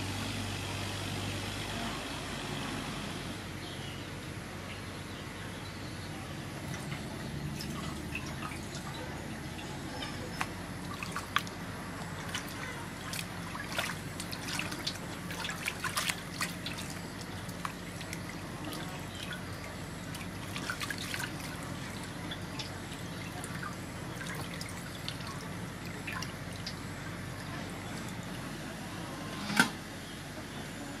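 Hands washing and scrubbing a slab of raw pork belly in an aluminium basin of water: sloshing and trickling water with scattered small clicks and scrapes against the metal. Near the end a metal pot lid clatters once.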